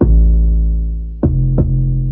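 A fat 808 sub-bass line played solo: one long, deep note that slowly fades, then two quick notes at a higher pitch a little over a second in.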